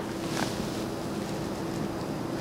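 Steady background hiss with a faint, steady low hum, in a pause between two voices.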